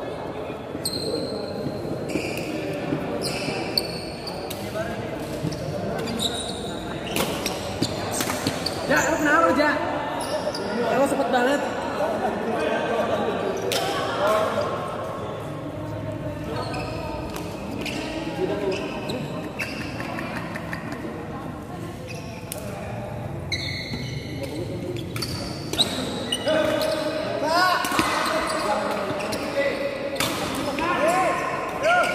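Sharp knocks of badminton rackets hitting shuttlecocks, irregular throughout, with voices and the echo of a large sports hall.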